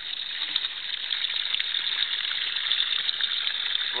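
Water from a submersible pond pump's hose pouring steadily into a trash-can biofilter, splashing onto a bag of activated carbon and filter pads with a steady hiss.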